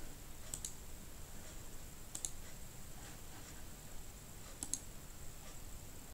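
Faint computer mouse clicks a second or two apart, with two in quick succession near the end, over a faint steady hiss.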